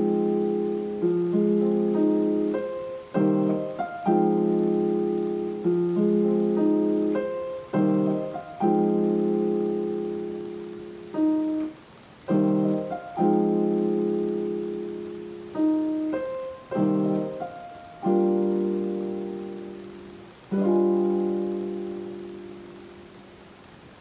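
Yamaha digital piano playing a slow chord progression in C minor with both hands, a new chord struck every second or two and left to ring. The last chord dies away over the final few seconds.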